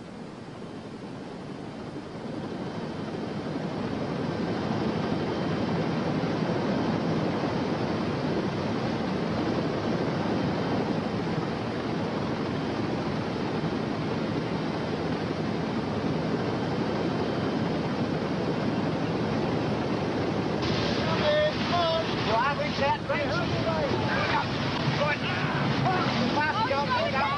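Wind and rough open sea surging, growing over the first few seconds and then steady. Near the end, people scream and shout over it.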